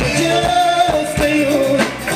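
A live band on an amplified stage playing electric guitars, bass guitar and drum kit, with a singer's voice over the top and steady drum hits.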